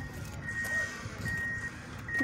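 Vehicle reversing alarm: one high, steady electronic beep repeating at an even pace, a little more than once a second, two beeps here, over low yard rumble.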